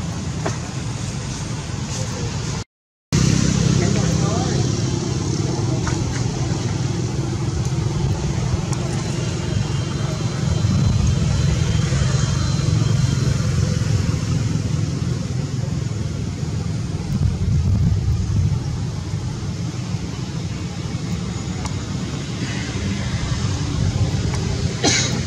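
Steady low outdoor rumble, like wind on the microphone or a nearby engine, with the sound cutting out completely for a moment about three seconds in.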